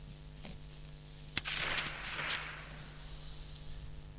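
A single rifle shot, a sharp crack followed by about a second of rushing echo, over a steady electrical hum.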